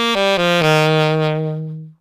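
Saxophone walking a C major pentatonic run down in quick steps and landing on a long held low C, which fades out near the end.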